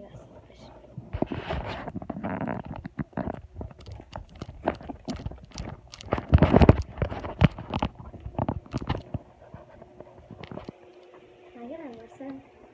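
Phone microphone rubbing and knocking against hair and a sweater as the phone is swung around: a run of scrapes and clicks, loudest about six seconds in, then dying away.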